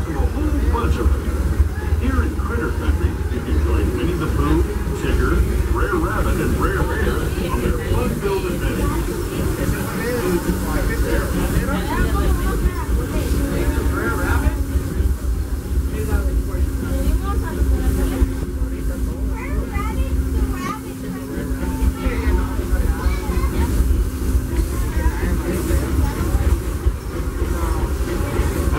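Disneyland Railroad narrow-gauge train in motion, heard from inside an open-sided passenger car: a steady low rumble from the rolling cars, with people chattering aboard. A faint steady hum joins it from about ten seconds in and stops near the end.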